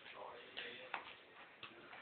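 Faint voices in the background, with a few soft, short clicks.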